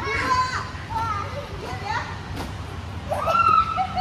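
Small children's high voices calling out and squealing as they play on a trampoline, with a longer high call a little after three seconds, over a steady low hum.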